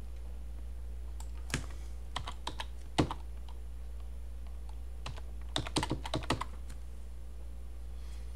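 Computer keyboard being typed on in two short bursts of keystrokes, one starting about a second and a half in and another about five and a half seconds in, over a steady low hum.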